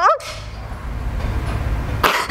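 A woman crying: a short rising sob of the voice at the very start, then a steady low hum under faint noise.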